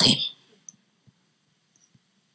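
A woman's amplified speaking voice trailing off at the very start, then a pause of near silence: room tone with one faint tick.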